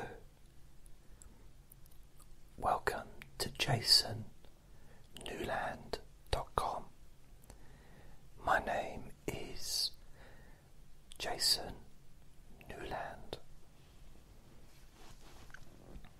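Soft whispered speech in short phrases with pauses between them.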